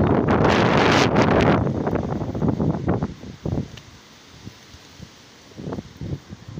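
Wind buffeting the phone's microphone in gusts. A strong rumbling gust fills the first second and a half, then breaks into fitful bursts that die down, and picks up again near the end.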